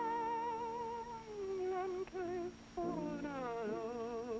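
A woman singing a slow melody with vibrato, holding long notes that slide downward at the ends of phrases, with short pauses for breath a little after two seconds in.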